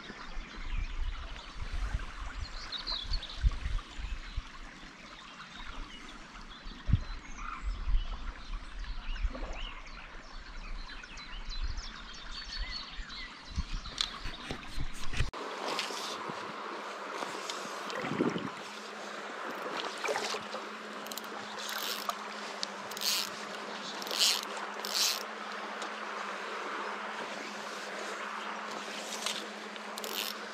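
Riverside ambience: for the first half, wind buffets the microphone in irregular low gusts over the sound of the river. About halfway through it changes abruptly to a steadier hiss of flowing water with a faint hum and a few sharp clicks.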